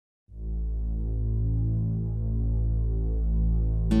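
A steady low hum with a stack of evenly spaced overtones, fading in just after the start. Plucked guitar music comes in just before the end.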